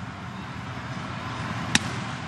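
A steady low background hum, then near the end a single sharp pop as an 89 mph pitch smacks into the catcher's mitt on a swinging strike three.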